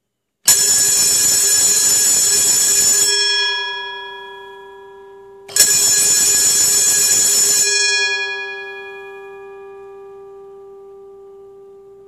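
Old brass electric fire or school alarm bell switched on twice: each time it rings continuously for about two and a half seconds, then stops, and the gong hums on as it fades away.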